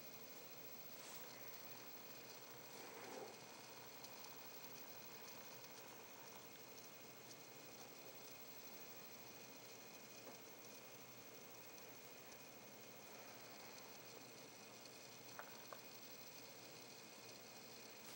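Near silence: indoor room tone with a faint steady hiss, broken only by two faint clicks about fifteen seconds in.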